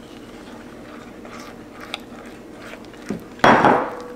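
Soft scraping and light taps of a silicone spatula in a glass mixing bowl as flour is poured onto melted butter and stirred in. A short, louder rush of noise comes about three and a half seconds in.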